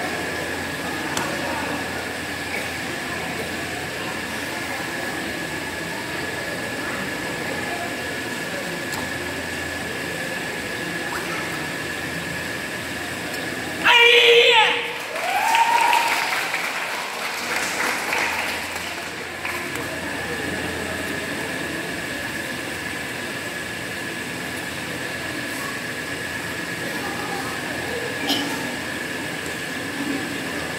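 A karate kiai: one loud, sudden shout about halfway through the Shotokan kata Jion, followed by a few seconds of louder voices. Underneath runs the steady murmur of a seated crowd in a large hall.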